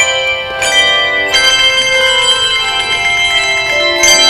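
Handbell choir ringing a hymn arrangement: chords of bronze handbells that ring on and overlap as they fade. Fresh chords are struck about half a second in, just over a second in, and again at the very end.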